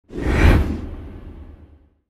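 A whoosh sound effect for an intro logo, swelling quickly to a peak about half a second in and fading away over the next second, with a low rumble beneath.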